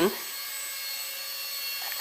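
Micro electric RC helicopter, a scale Bell 222 Airwolf, in flight: a steady high-pitched whine and hiss from its small electric motor and rotor.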